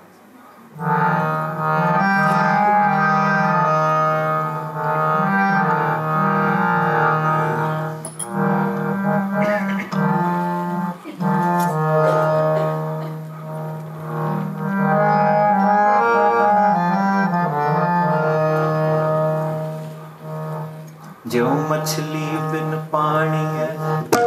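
A harmonium comes in about a second in, playing a slow melody over a held low drone note. Near the end there is a sharp attack and another sound enters, with gliding pitches.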